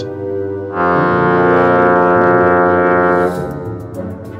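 One long, low horn note held steady for about two and a half seconds, starting about a second in, over quiet background music.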